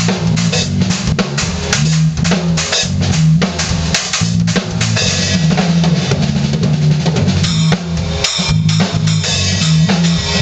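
Drum kit and electric bass playing a funk groove together: busy, steady drum hits over a repeating low bass line.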